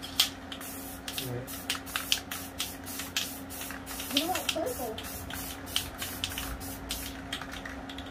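Aerosol spray-paint can misting in many short, irregular bursts, a few each second, over a steady low hum.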